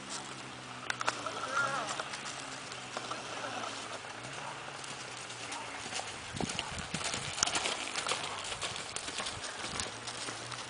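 Hoofbeats of a ridden horse loping on a dirt arena, an uneven run of soft knocks that grows thicker and louder past the middle.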